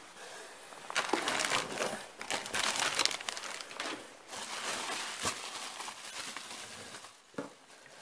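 Plastic packaging crinkling and rustling as hands rummage through a cardboard box, louder in the first half and dying down toward the end.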